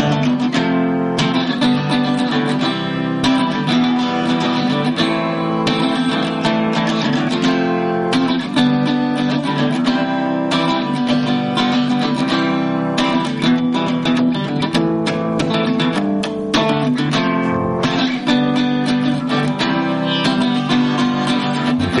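Instrumental break in a song, led by plucked and strummed guitar over sustained backing notes, between sung verses.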